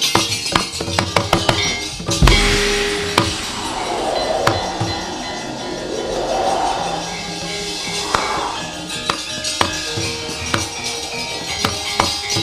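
Gamelan accompaniment to a wayang kulit scene, with sharp metallic knocks and clattering over the steady instrument tones. The knocks come in a fast run during the first two seconds, then more sparsely, with one loud crash-like hit about two seconds in.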